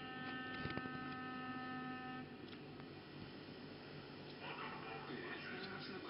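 A steady electrical hum of several pitches that runs for about two seconds and then cuts off, with a single short click about a second in. Fainter, busier background sound follows from past the middle.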